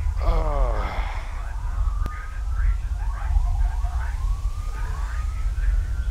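A siren wailing, its pitch slowly rising and falling again and again, over a steady low rumble, with a single sharp click about two seconds in.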